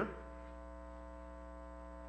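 Steady electrical mains hum with its overtones, heard in a pause between words.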